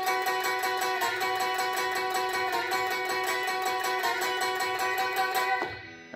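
Telecaster-style electric guitar playing a two-note shape high on the neck, picked rapidly and evenly so that the notes ring on steadily. It stops shortly before the end.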